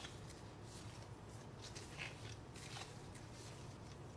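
Faint handling sounds of gloved hands rolling soft dough into balls and setting them on a silicone baking mat: light rustles and a few soft taps over a low steady hum.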